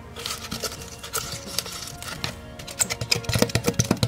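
Background music under a run of quick clicks and scrapes that come thicker in the last second: a small pumpkin-carving saw working through the rind of a small pumpkin.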